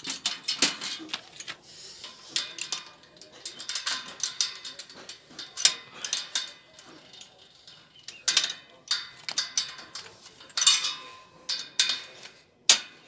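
Irregular metallic clicks, taps and clinks, some ringing briefly, from a bicycle wheel and its axle hardware being handled and fitted into the frame during repair.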